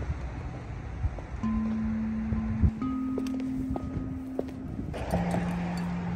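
Outdoor street noise with wind rumbling on the microphone. A few long, held low notes at different pitches and several short knocks sound over it.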